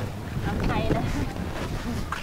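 Wind buffeting the microphone, a steady low rumble, with faint voices in the background.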